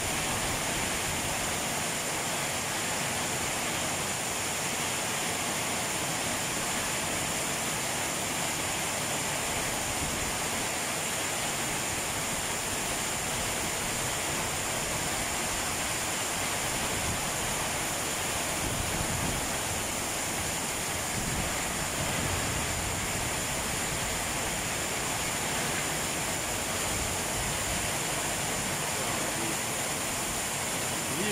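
Torrential tropical rain pouring down in a steady, even rush.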